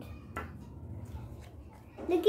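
Quiet room with a low steady hum and one short soft click about a third of a second in.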